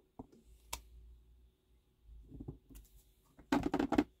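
A clear acrylic stamp block being handled on a craft desk: a couple of sharp light clicks early, a soft scuffle, then a quick cluster of louder clattering knocks near the end.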